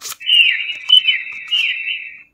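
Dolphin-call sound effect from a talking flash card reader's small speaker, played after the word 'dolphin': high electronic chirping whistles with a falling glide about twice a second. A click opens it.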